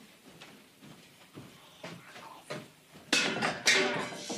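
Someone moving about a dark room. There are faint scattered knocks and footfalls at first, then a louder burst of clattering and scuffling about three seconds in.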